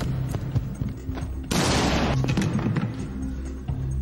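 Action-film soundtrack: a tense score with a low, steady drone, broken by several sharp hits and one loud impact about a second and a half in that rings out briefly.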